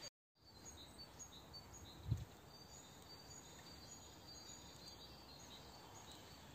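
Faint outdoor ambience with distant small birds chirping in short high notes throughout, and one brief low thump about two seconds in. The sound cuts out for a moment right at the start.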